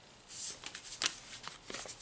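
Paper-labelled fabric swatch cards rustling as they are handled and leafed through, in short scratchy bursts with a small sharp click about halfway through.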